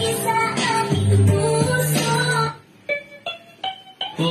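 Pop song with a steady beat and a singing voice, dropping out a little over halfway through to leave three short, spaced notes before the full music comes back in at the end.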